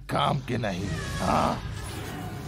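A man's short growling voice with no words, over dramatic background music, followed by a brief noisy burst about a second and a quarter in.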